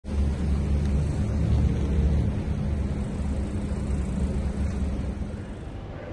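Low, steady engine rumble of a nearby vehicle heard outdoors, easing off slightly near the end.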